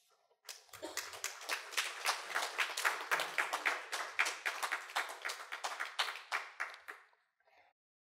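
Audience applauding, starting about half a second in and dying away about a second before the end.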